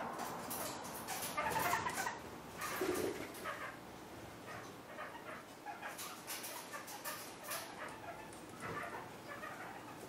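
Kakariki parakeets calling, a run of short sharp calls and clicks. They are busiest in the first three seconds and sparser after.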